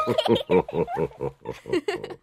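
A young girl's giggle: a quick run of short laughs, about six or seven a second, trailing off near the end.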